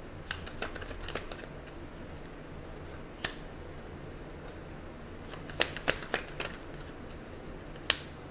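Tarot cards being handled on a wooden table: scattered sharp clicks and snaps as cards are picked up and tapped down. There is a single click about three seconds in and a quick cluster of them near six seconds, over a low steady hum.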